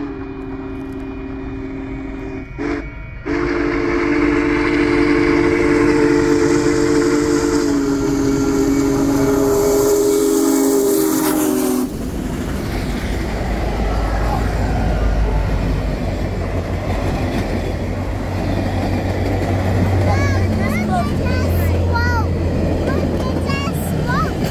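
Union Pacific Big Boy No. 4014 steam locomotive blowing its steam whistle, a short blast then a long one lasting about nine seconds that drops slightly in pitch as the engine comes by. When the whistle stops, the deep rumble of the locomotive and its passenger cars rolling past over the rails takes over.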